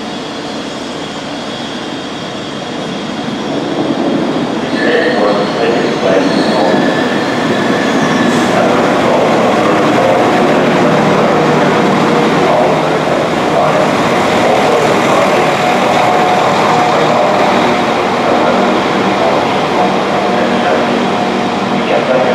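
Northern Class 195 diesel multiple unit pulling into a platform. Its engine and wheel noise grows louder over the first few seconds, then runs steadily as the train draws alongside, with a brief high tone about five seconds in.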